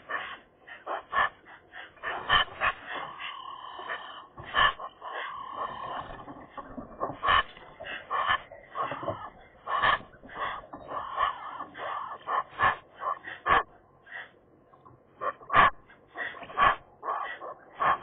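Several Eurasian magpies calling together around their nest: a busy, irregular run of short chattering and varied call notes, one after another with only brief gaps.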